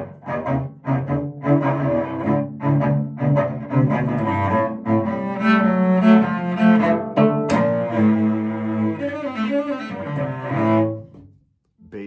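Cello playing a blues accompaniment (comping), several notes sounding together as chords, some struck short and others held. The playing stops about a second before the end.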